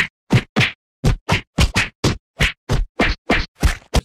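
A rapid run of punch and whack sound effects, about three or four hits a second with dead silence between them: added fight-scene hit sounds for a staged beating.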